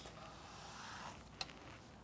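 A cucumber pushed once across the blade of a Benriner mandoline slicer: a faint scraping slide lasting about a second, then a light click.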